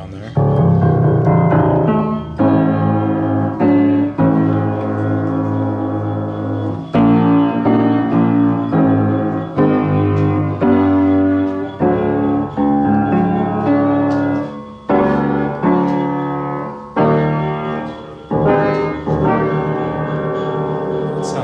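Emerson upright piano, built around 1890, played in a long series of loud chords, each struck and left ringing before the next. It sounds rough: the piano has major regulation issues and missing strings, though the soundboard still projects well.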